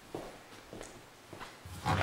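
A few soft footsteps on a tile floor, then a door being unlatched and opened near the end.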